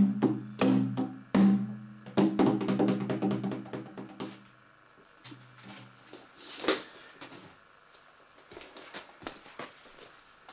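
A hand-held frame drum struck with the fingers and palm in a quick rhythm that thins out and stops about four and a half seconds in. After it come a few soft knocks as the drum is handled.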